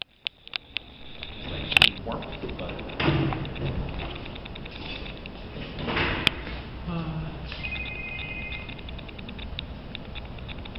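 Indistinct voices under handling noise, with several sharp knocks and clatters as the 3D printer's build plate is taken out and carried to a table.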